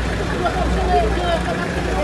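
Speech: quieter voices talking over a steady low hum.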